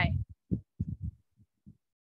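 Speech only: the end of the spoken word 'why' over a video call, then a few short, faint low sounds separated by silent gaps.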